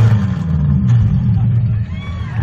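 Demolition derby car's engine running at a low, steady idle, heard from inside the stripped-out cab.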